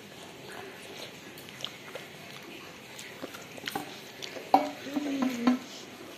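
A spoon clinking and scraping against a steel bowl while someone eats instant pasta: scattered light clicks, then a louder pitched sound lasting about a second, starting about four and a half seconds in.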